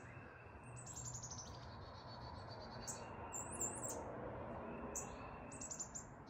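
Songbirds singing in the woods: a quick high trill about a second in and another near the end, with a few high chirps between them, over faint steady background noise.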